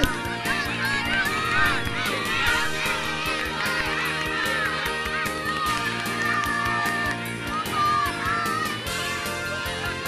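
Young children cheering and shouting encouragement in many high voices, with hand clapping, over background music.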